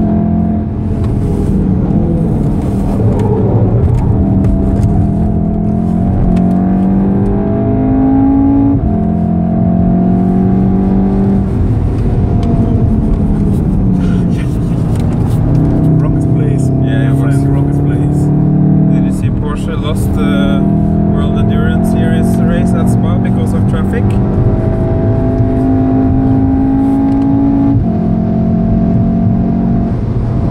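Interior sound of a 2014 Volkswagen Golf R's turbocharged 2.0-litre four-cylinder engine pulling hard at track speed. The engine note climbs and then drops back several times as it shifts up through the gears and lifts for corners, over steady tyre and road rumble.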